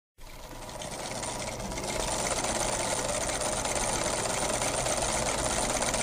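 Rapid, continuous mechanical clattering of a telegraph stock ticker printing, growing louder over the first couple of seconds and then holding steady.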